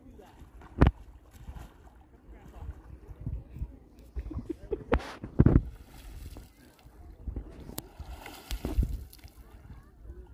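Lake water splashing and sloshing as a swimmer moves, stands up and wades in the shallows, over an uneven low rumble. A few sharp knocks stand out, the loudest about a second in and at about five and a half seconds.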